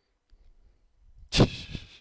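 A man's sudden burst of laughter, a sharp breath into the microphone about a second and a half in, after a second of near quiet.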